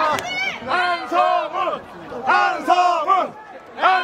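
A crowd of women fans chanting a singer's name in unison, a short shouted chant repeated about every second and a half.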